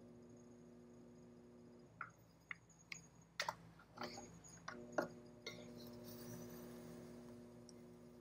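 Faint hum of an electric potter's wheel motor, which cuts out about two seconds in and comes back about five seconds in. In the gap there are several light clicks and clinks.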